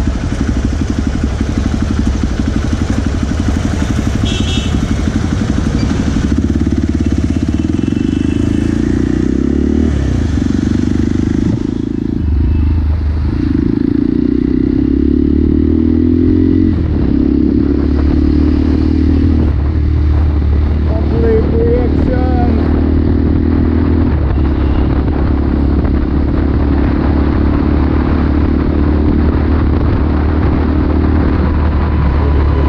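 Motorcycle engine with a carbon-fibre slip-on muffler, heard from the rider's position while riding in traffic. The note rises and falls with the throttle and dips briefly about twelve seconds in.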